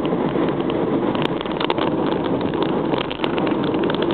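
Steady in-cabin noise of a first-generation Honda Insight hybrid cruising on an expressway: road, wind and engine noise blended into an even hum.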